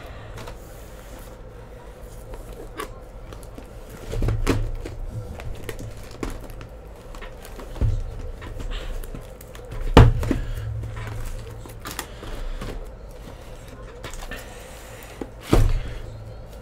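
Shrink-wrapped cardboard hobby boxes being lifted and set down on a stack: four dull thuds, the loudest about ten seconds in, with lighter knocks and taps between.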